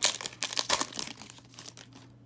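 Foil wrapper of a 2020 Panini Playbook football card pack crinkling and tearing as it is ripped open: a rapid run of crackles that thins out over the second half.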